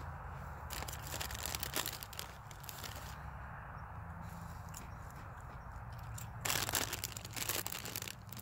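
Ruffles potato chip bag crinkling and chips crunching as they are eaten, in two short bursts of crackle, about a second in and again near the end.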